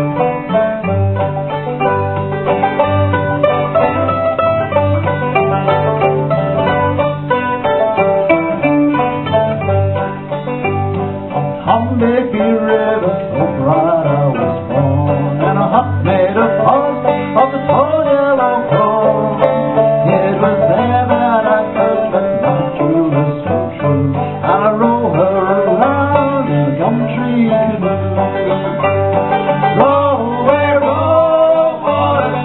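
Old-time string band playing an acoustic guitar and banjo tune, the guitar keeping a steady alternating bass under a plucked banjo melody.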